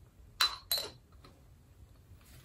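Two light clinks about a third of a second apart, each with a brief ring, as a small snow-globe lid is set down onto a ceramic cup.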